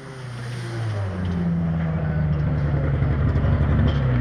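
Race car engine running at a steady note, fading in over the first second.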